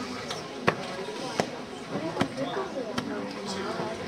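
Four sharp, evenly spaced taps about three-quarters of a second apart, a count-off before the band starts to play, over low audience chatter.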